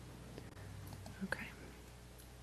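Quiet room tone with a steady low electrical hum and faint whispered speech, including a brief soft voice sound a little past halfway.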